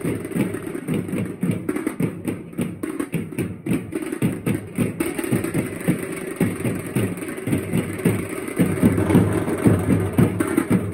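Loud, fast drumming: a dense, driving run of quick beats playing for dancing.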